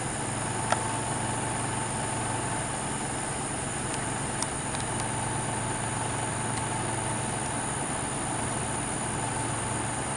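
A motor running with a steady low hum and a thin whine above it. A couple of brief clicks come about a second in and again near the middle.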